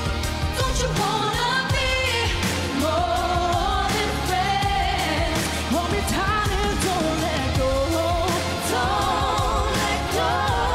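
Pop song performed live by a female vocal group: a woman's lead voice sings sustained, wavering lines with vibrato and runs over a pop backing with heavy bass.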